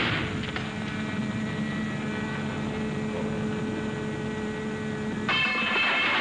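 Cartoon soundtrack of a large electric dynamo: a crash right at the start, then a steady electrical hum with sustained tones, broken about five seconds in by a louder burst with several high tones.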